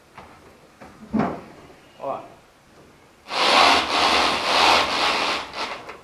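Volkswagen Kombi's front tyres scrubbing across the floor as the steering wheel is turned with the van standing still: a loud rasping rub lasting about two seconds, starting a little past halfway. The steering, fitted with a new centre pin, now turns at a standstill. A short thump comes about a second in.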